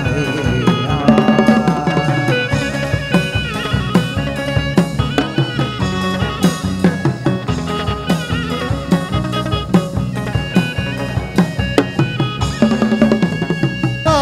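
Chầu văn ritual music in an instrumental passage: a busy, steady pattern of drum and percussion strokes with melodic instrument lines over it, without singing.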